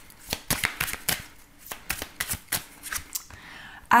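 A deck of oracle cards shuffled by hand: a rapid, irregular run of card clicks and slaps that thins out about three seconds in.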